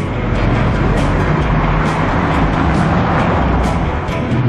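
Cars passing on a busy road, a steady low rumble of engines and tyres.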